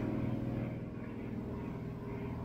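Airplane flying overhead: a steady drone that holds an even pitch and level.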